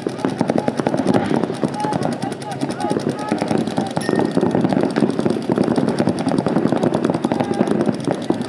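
Paintball markers firing rapid, overlapping streams of shots from several guns at once, with voices calling out over the fire.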